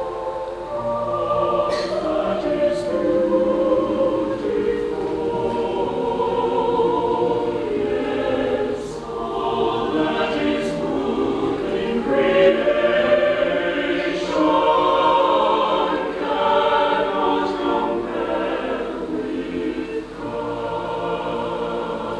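Mixed chamber choir of men's and women's voices singing a sustained choral passage in several parts. Crisp 's' consonants from the singers cut through now and then.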